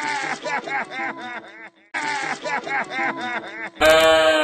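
A cartoon character's voice crying loudly, wailing in quick blubbering sobs in two runs with a short break near the middle. Music cuts in near the end.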